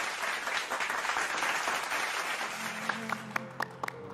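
Studio audience applauding, the clapping thinning out and fading over the last second or so.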